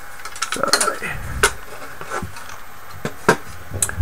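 Aluminum rectangular-tube drive-assembly parts knocking and clinking as they are handled and set against a wooden workbench, a handful of separate knocks with the loudest about a second and a half in.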